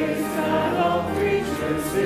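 Congregation singing a hymn together in the sanctuary, held notes with vibrato and clear hissing 's' sounds near the start and end.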